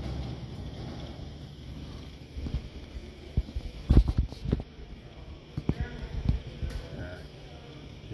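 Indistinct background voices and steady hall noise, broken by a scatter of short knocks and thumps, the loudest about four seconds in.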